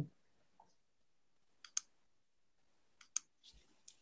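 A few short, faint clicks in near silence: a pair a little under two seconds in and another pair about three seconds in, followed by a faint low thump.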